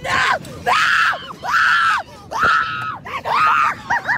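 Two young women screaming over and over on a fast-moving fair ride, about five long, high-pitched screams in quick succession.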